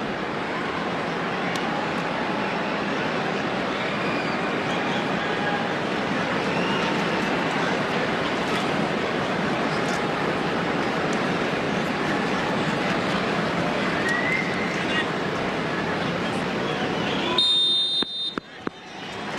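Large stadium crowd making a steady din of voices and cheering. Near the end the crowd noise drops off and a short, high whistle sounds.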